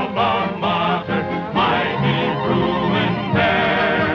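Male vocal quartet singing in close harmony, the voices wavering with vibrato and holding a long chord through the middle.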